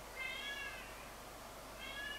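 A cat mewing twice, short high-pitched mews that rise and fall in pitch: one just after the start and another beginning near the end.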